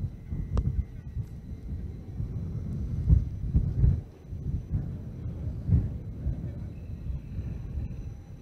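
Outdoor wind buffeting the microphone: an uneven low rumble that swells in gusts, over a few faint, steady high-pitched tones.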